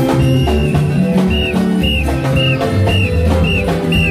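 Upbeat praise music with drums and a bass line, and a whistle blown in short toots about twice a second, in time with the beat.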